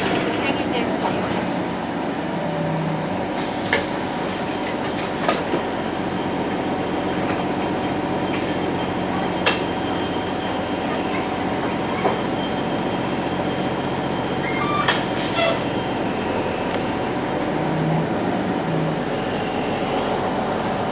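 TTC CLRV streetcar in motion, heard from inside: a steady rumble of steel wheels on rail and motor hum, with a scattering of short sharp clicks and knocks.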